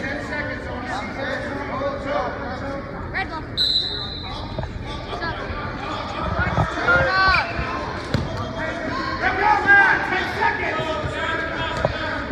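Coaches and spectators shouting during a wrestling bout, with a short whistle blast a little over a third of the way in. Dull thuds of bodies on the mat come in the second half.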